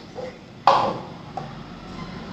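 Paper cups being set down on a stone floor during a cup-stacking race: a few light taps, with one louder knock about two-thirds of a second in.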